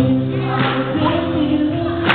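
A live gospel song: a singer over a steady instrumental backing, amplified through loudspeakers in a large hall.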